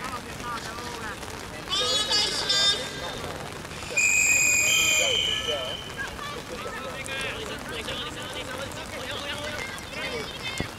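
A referee's whistle blown once about four seconds in, a steady shrill blast of about a second whose pitch steps up just before it stops. Players' shouts come before it, with a constant outdoor hiss underneath.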